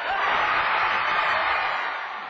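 Basketball crowd cheering a made three-pointer, a steady cheer that swells in and eases off near the end.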